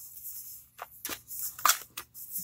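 Paper pages of a handmade junk journal being flipped, giving a few short paper swishes and flaps.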